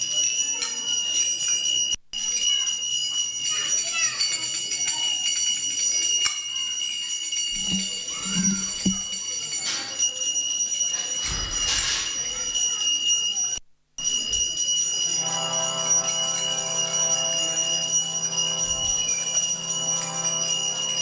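A small handbell rung continuously, a steady high ringing over the murmur of a crowd. About three quarters of the way through, a harmonium starts a steady sustained chord.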